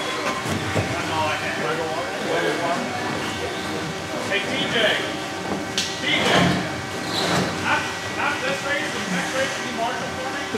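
Indistinct voices and background chatter over a steady hum.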